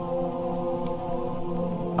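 Background music holding a sustained chord of several steady tones over a steady crackling hiss, with one faint tick a little before the middle.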